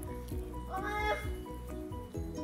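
Background music, with a baby's short high-pitched vocal sound a little more than halfway through.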